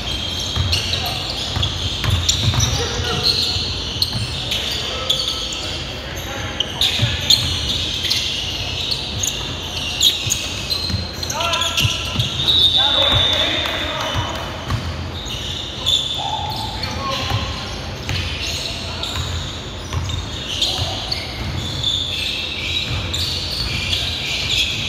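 Indoor basketball game: a basketball bouncing repeatedly on a hardwood court amid players' shouts, echoing in a large gym.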